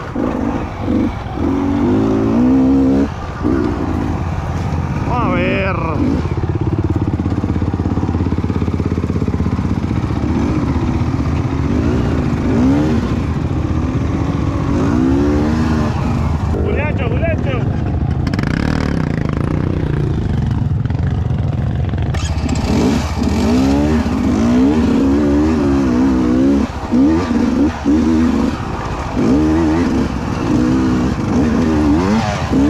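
Beta 200 RR's two-stroke engine being ridden at low speed, its pitch rising and falling over and over with the throttle, with sharper revs about five seconds in and again around the middle. The revving is quicker and more frequent near the end.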